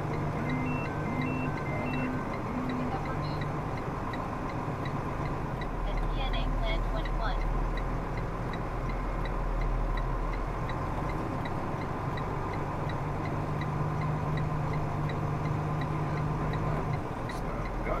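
Steady drone of a semi truck's diesel engine and road noise heard inside the cab as the truck moves slowly, the low rumble swelling for a few seconds midway. A few short beeps sound in the first three seconds, and a faint fast ticking runs underneath.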